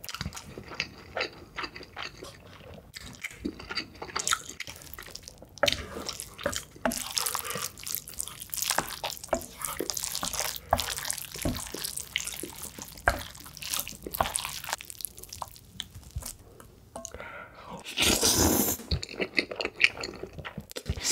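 Close-up mouth sounds of chewing noodles, then chopsticks stirring sauce-coated instant noodles on a plate with wet, sticky squishing. Near the end comes a loud slurp of noodles.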